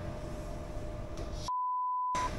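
Low background noise, then about one and a half seconds in all other sound cuts out and a steady, single-pitched electronic beep near 1 kHz takes its place: an edited-in censor bleep.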